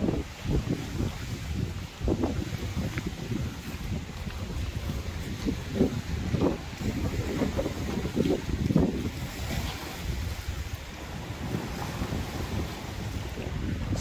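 Gusty wind buffeting the microphone, over choppy lake water splashing against the shore and floating docks.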